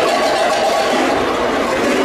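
Dozens of large cattle bells hung together on a float, clanging continuously in a dense jangling mass.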